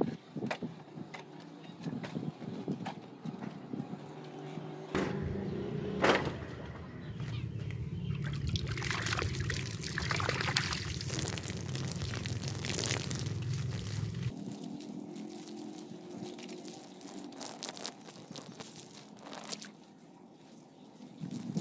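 Water from a garden hose splashing onto the soil, starting about five seconds in and cutting off around fourteen seconds.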